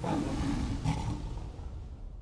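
A lion's roar sound effect under a team logo sting: it starts abruptly, swells again about a second in, then fades away.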